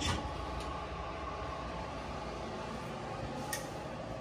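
Steady low background hum and hiss of a quiet room, with a faint click right at the start and another about three and a half seconds in.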